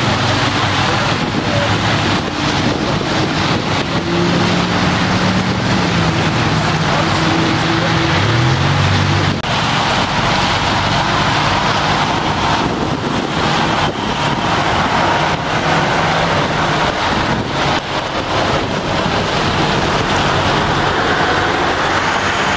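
Steady road traffic noise with wind on the microphone. A vehicle engine's hum stands out from about four to twelve seconds in, climbing in pitch around eight seconds in.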